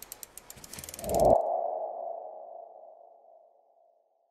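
Logo sting sound effect: a quick run of clicks for about a second, then a single ringing tone that swells and fades away over about two seconds.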